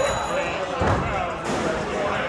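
People talking over background music, with a few low thumps, the clearest about a second in.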